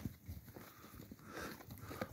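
Faint, irregular steps on snow-covered ground over a quiet outdoor hiss.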